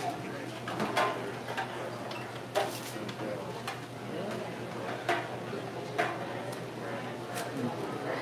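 Background chatter of people in a taproom, with several sharp knocks and clinks spread through it as a plastic cup and a small beer glass are handled and set down on the bar counter.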